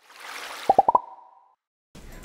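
Editing sound effect: a soft whoosh swells up, then four quick popping blips step up in pitch, the last one ringing on briefly before the sound cuts to silence.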